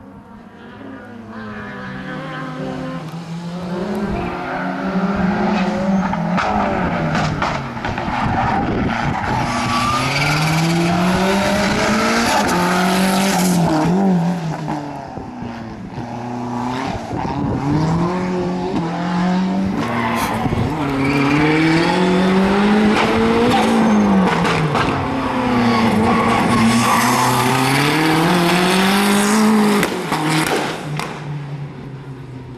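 Fiat Uno Turbo's turbocharged four-cylinder engine revving up and falling back over and over as the car is driven hard through slalom gates. It grows louder over the first few seconds as the car approaches.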